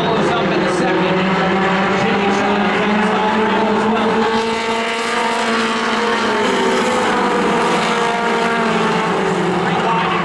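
A pack of Outlaw Mini stock cars racing together, many engines running at high revs at once, their pitches rising and falling as the cars go through the turns and down the straights.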